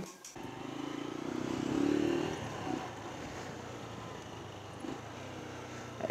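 Honda CG Cargo 125's small single-cylinder four-stroke engine running as the motorcycle is ridden. Its note swells louder about a second and a half in, then settles back to a steady run.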